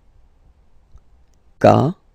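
Mostly a quiet pause, then near the end a man's voice says one short syllable: the letter K spoken the French way ('ka'), its second repetition.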